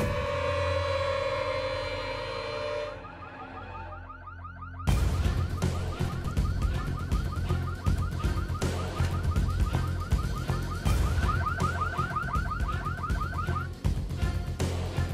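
Car alarm sounding in fast, evenly repeating warbling sweeps that stop just before the end. A held musical drone is under it for the first few seconds, and a louder, deep-toned layer joins about five seconds in.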